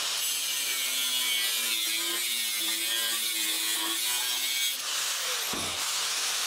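Angle grinder with a thin cut-off disc cutting a steel plate: a steady, high, hissing grind with a faint motor whine under it.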